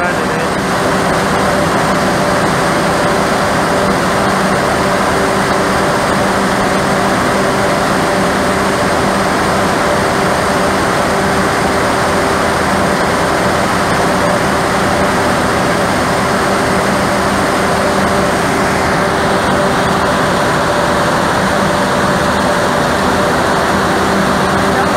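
Large diesel generator engines of a 3 MW power plant running: a loud, unbroken drone with several constant hum tones.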